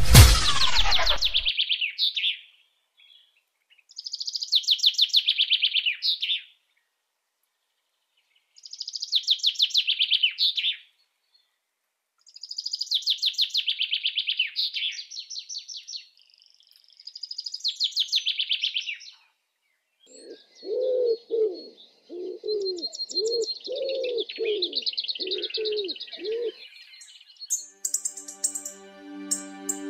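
Birds singing: a high trilled song in phrases of two to three seconds, repeated after short pauses. From about two-thirds of the way in, a second, lower-pitched call repeats about one and a half times a second alongside it.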